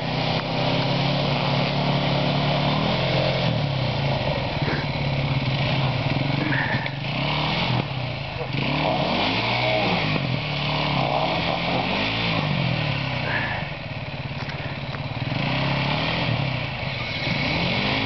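KTM enduro motorcycle engines running on a steep climb, the engine note rising and falling repeatedly through the middle as the throttle is worked.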